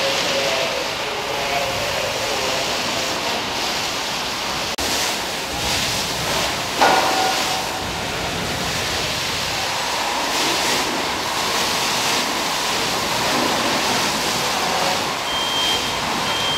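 Steady rushing of a fire hose stream spraying water onto a burning truck, mixed with the fire itself. There is a single sharp knock about seven seconds in.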